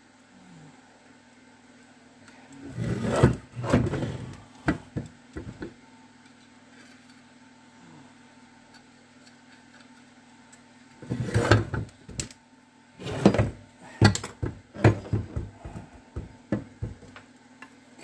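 Knocks and clatters of hand tools and metal gearbox parts being handled on a workbench, in two bursts: a few seconds in, then again from about eleven seconds onward as a run of sharp taps.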